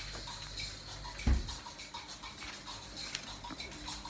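A single short, low thump about a second in, followed by faint kitchen room noise with a few small clicks.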